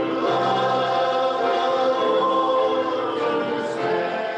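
A congregation singing a hymn together, many voices holding long notes.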